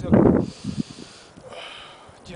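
A man's voice says a single short word, then faint background noise with a soft high hiss.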